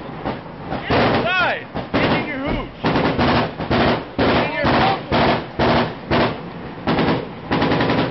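Automatic gunfire in a rapid run of short bursts, about two a second, close and loud, in a firefight with fire coming in from the surrounding heights.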